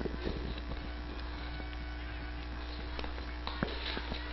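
Faint open-air sound from an amateur football pitch, with scattered distant voices over a steady electrical hum. A couple of sharp knocks come late on, one just before the end.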